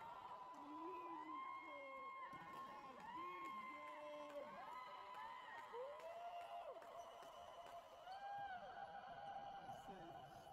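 Faint, echoing calls and shouts of basketball players across an indoor court, many overlapping voices rising and falling in pitch.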